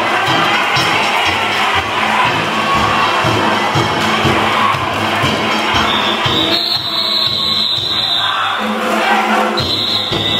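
Danjiri festival music of drums and gongs struck in a rapid beat over a large crowd shouting, loud throughout. A shrill high note comes in about six seconds in, drops out near nine seconds and returns near the end.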